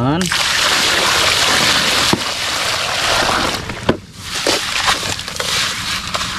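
Wet, gravelly sand being scraped and scooped by hand out of a plastic toy dump truck's bed, with water sloshing: a steady gritty rasp with a few sharp clicks. It dips briefly about four seconds in, then resumes.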